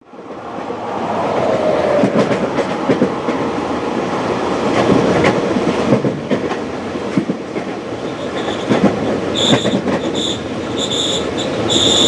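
Inside a moving passenger train: the steady rumble of the coach's wheels rolling on the rails, with scattered clicks over the rail joints, fading in at the start. Over the last couple of seconds a high squeal comes and goes in short pulses.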